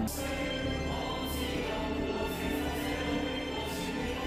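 Choral singing: many voices holding slow, sustained notes over a steady low hum.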